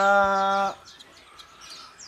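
A man's drawn-out spoken vowel ends about three-quarters of a second in. After it, faint chirps of caged songbirds are heard against low background noise.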